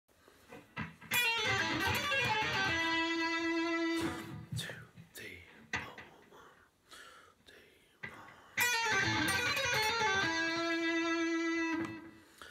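Electric guitar playing a bluesy lick twice. Each pass is a quick descending run down the blues scale that ends on one long held note. The first comes about a second in and the second near the end, with a quiet pause between.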